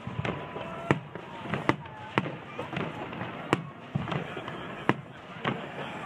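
Aerial firework shells bursting overhead: a string of sharp bangs at irregular intervals, roughly one every half second to a second and a half.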